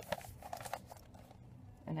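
Newsprint rustling and crinkling as a newspaper is rolled up by hand, with a few crisp crackles in the first second, quieter after.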